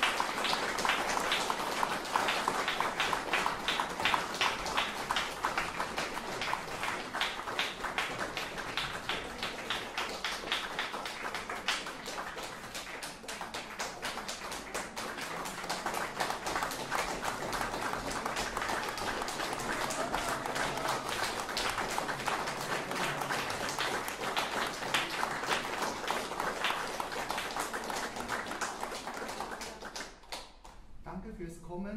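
A small audience applauding: a dense, steady patter of hand claps that eases a little about halfway and then picks up again.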